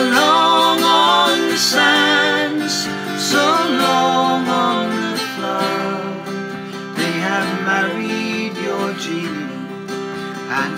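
Folk ballad accompaniment: strummed acoustic guitar and sustained harmonium chords, with voices holding long wavering notes over the first few seconds before the instruments carry on alone, quieter.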